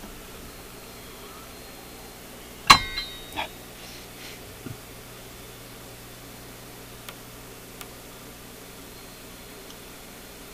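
A sharp metallic clang with brief ringing about three seconds in, followed by a couple of lighter knocks and a few faint ticks, over a steady low hum and hiss from the bench equipment.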